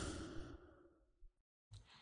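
The fading tail of a swelling whoosh, a noise rise and fall heard in the first half-second, then silence.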